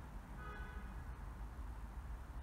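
Room tone: a steady low hum with faint hiss. About half a second in, a brief faint pitched sound rings out.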